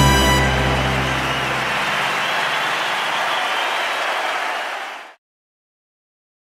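A live band's final sustained chord dies away, leaving an audience applauding. The applause slowly fades, then cuts off suddenly about five seconds in, the end of the live track.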